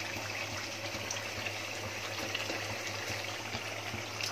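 Thick mutton curry gravy bubbling in an aluminium pot as it is cooked down, stirred with a wooden spoon. It makes a steady wet hiss over a constant low hum.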